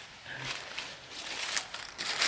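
Quiet outdoor ambience with faint rustling and a few light crackles, as of movement on dry leaf litter.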